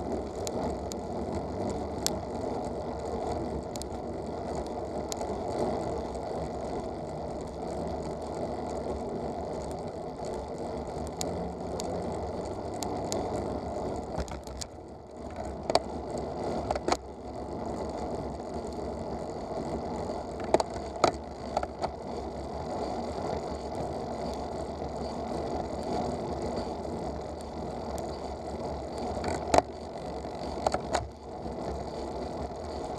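Road bike rolling, heard from a camera mounted on the bike: steady tyre and road noise with the freewheel ticking as it coasts, and a few sharp knocks in the second half.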